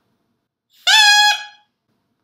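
A short plastic drinking-straw reed, its end cut to a point, blown once: a buzzy, high-pitched reed tone that bends up slightly as it starts about a second in, holds for about half a second, then thins out and stops. The high pitch comes from the straw having been cut very short.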